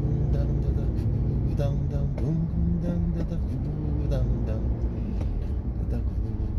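Steady road and engine rumble inside a moving car's cabin, with a voice over it drawing out low, held notes, as in humming or half-sung words.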